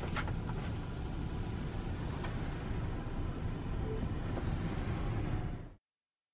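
Steady hiss of rain and outdoor ambience heard from inside a parked car with a rear door open, with a faint tick or two. It cuts off suddenly near the end.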